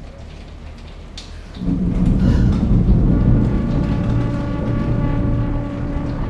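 Dramatic soundtrack sound design: a quiet low drone, then about one and a half seconds in a loud deep rumble swells up, with a held chord of steady tones above it.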